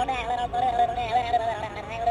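Minion Bob with Teddy Bear plush toy's voice chip playing a high-pitched, sing-song Minion voice that holds long, wavering notes, set off by pressing the teddy bear.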